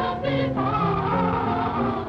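A children's choir singing in parts, several voices holding notes together and moving to new notes every half second or so.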